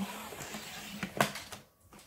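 A paper trimmer's blade carriage sliding along its rail over Mylar acetate, a steady scrape with a sharp click a little over a second in. The blade, gone dull, is not cutting through the acetate.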